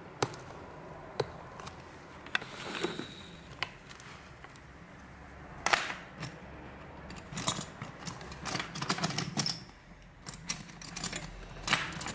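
Small metal hand tools clicking and tapping, with faint scraping, as broken display glass is picked out of a phone's frame. The clicks come sparsely at first, then in a quicker run in the second half.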